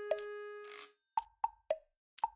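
Quiz thinking-time sound effects: a held electronic jingle note fades out a little under a second in, followed by a few short, pitched plop sounds at uneven intervals.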